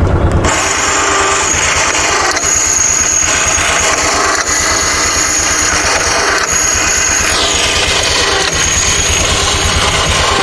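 Utility vehicle's engine idling steadily with an even, low pulsing beat, briefly louder right at the start.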